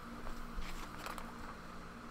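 A comic book being handled and opened: light rustling and a few soft crinkles of paper.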